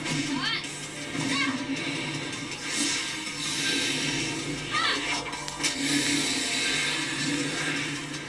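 Soundtrack of an animated episode playing: dramatic battle music with sustained low tones, with a few brief voices or cries over it.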